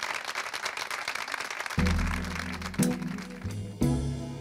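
Studio audience applause, then about two seconds in a live band starts the song's intro with held chords over a bass line, changing chord a couple of times, with a thump near the end.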